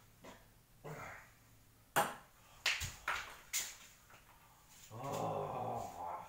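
Ping pong ball landing with a sharp click and bouncing about four more times on the beer pong table. A man's voice follows near the end.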